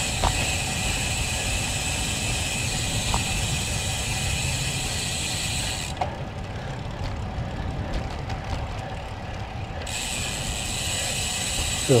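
Road bike's rear freehub ratcheting in a fast run of ticks while the rider coasts, from about six seconds in to near ten, over steady riding road noise.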